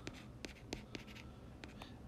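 A stylus writing by hand on a tablet screen: a faint run of light taps and short strokes as the letters 'cos 4x' are written.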